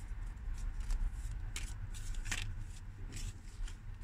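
Tarot cards being handled and shuffled: scattered light papery flicks and rustles over a steady low rumble.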